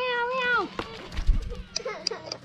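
A high, wavering vocal call that breaks off about half a second in, followed about a second in by a low bump and a few sharp knocks, as of handling close to the microphone.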